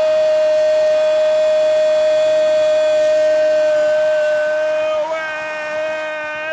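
A Brazilian TV football commentator's drawn-out goal cry, "Gol!", held on one long steady note, shifting to a new note near the end as the breath runs out.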